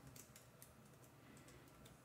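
Faint computer keyboard typing: a quick, irregular run of light key clicks.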